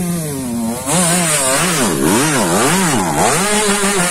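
Dirt bike engine running at a fast idle, then from about a second in revved up and down repeatedly, about two blips of the throttle a second.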